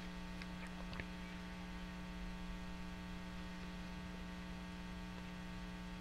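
Low, steady electrical hum from the recording chain, made of several even tones, with a couple of faint ticks in the first second.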